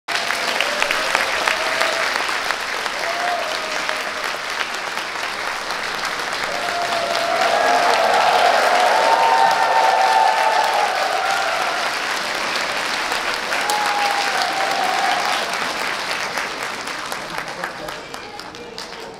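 Concert-hall audience applauding, the clapping swelling around the middle and dying away near the end.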